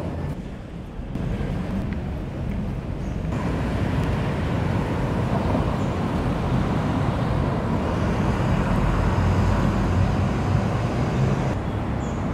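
Steady outdoor road-traffic noise: the low rumble and hiss of passing cars and vans. It grows louder about three seconds in.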